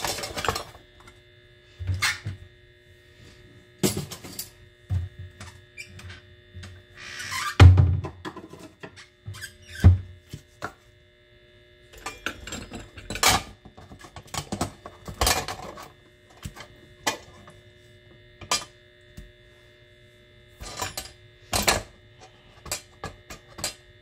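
Hand-cranked stainless steel food mill pressing cherry tomatoes: irregular metallic knocks, clicks and scrapes as the crank and blade work against the perforated plate and bowl, with a louder grinding stretch about eight seconds in.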